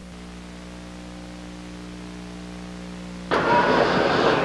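Steady electrical mains hum on the recording, then a sudden loud rush of noise about three seconds in.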